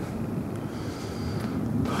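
Wind noise on the microphone: a low, steady rumble with no distinct events.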